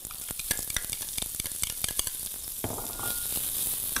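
Diced onions sizzling as they start to fry in hot oil in a saucepan, with a spoon clicking and scraping against the pan as they are stirred. The sizzle grows stronger about three seconds in.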